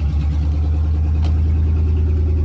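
1997 Chevy C/K 2500's 5.7 L Vortec 350 V8 idling through open headers just after a cold start: a loud, steady low rumble.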